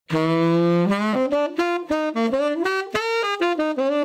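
Tenor saxophone playing a melodic phrase: one low note held for nearly a second, then a run of short, separately tongued notes stepping up and down.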